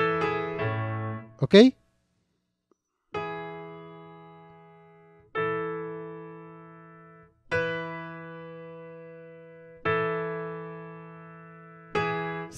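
Software piano playing a few notes that end about a second in, then, after a short gap, four sustained chords struck about two seconds apart, each left to ring and fade.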